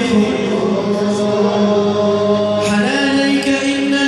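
Islamic devotional chanting (nasheed) with long held notes, the melody stepping up in pitch about two-thirds of the way through.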